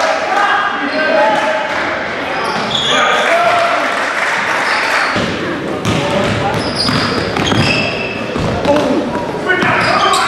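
Live basketball game sound in a gym: the ball bouncing on the hardwood floor, short high sneaker squeaks, and players and spectators calling out, all echoing in the hall.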